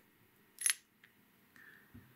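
A single short, sharp click about two-thirds of a second in, with only quiet room tone around it.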